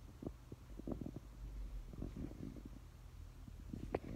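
Low, irregular rumbling and soft knocks close to the microphone over a faint steady hum, with one sharper knock at the very end.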